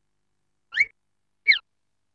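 Two short, high squeaky cartoon sound effects, about three quarters of a second apart.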